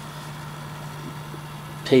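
Steady low hum of the Orion Teletrack alt/az mount's drive motor running.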